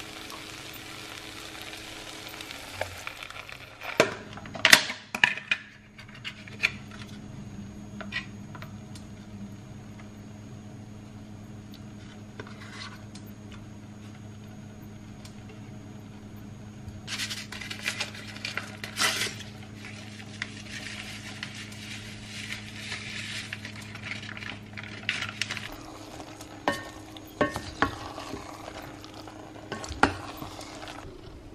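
Spoon and spatula working in a stainless steel pot of drained macaroni: a few sharp knocks about four to five seconds in, then a stretch of scraping and stirring in the second half. A steady low hum runs underneath.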